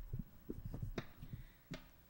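Microphone handling noise: a string of low thumps and bumps as the podium microphone is gripped and adjusted, with two sharper knocks, one about halfway through and one near the end.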